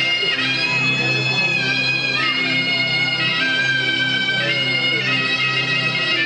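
A zokra, the Tunisian double-reed shawm, playing a slow melody of long held notes that step to a new pitch every second or so, over a steady low drone.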